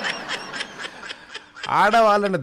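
Breathy laughter: a run of quick snickers that fades out about a second in, with a voice starting up again near the end.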